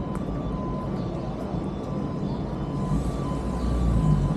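Steady low rumble of city street traffic, with a faint thin tone coming and going above it.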